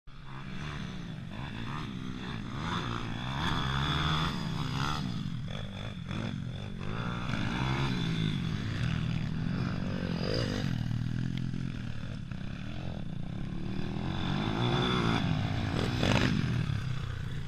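Several dirt bike engines running on a motocross track, revving up and down in pitch as the riders accelerate and ease off through the corners.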